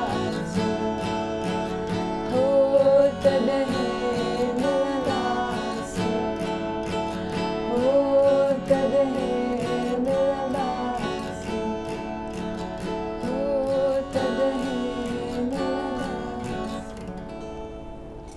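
Strummed acoustic guitar with a woman singing over it in phrases, live. The guitar and voice die away near the end as the song closes.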